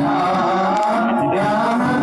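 A group of men singing Islamic devotional salawat in unison into microphones, drawing out long held notes.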